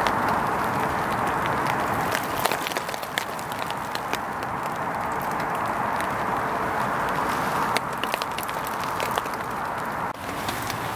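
Steady rain falling on the shelter fabric overhead, a continuous hiss with many scattered drips tapping on it.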